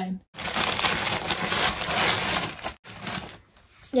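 Gift wrapping being torn and crinkled as a present is unwrapped. It is a dense paper rustle lasting over two seconds, with a short, quieter rustle after a brief pause.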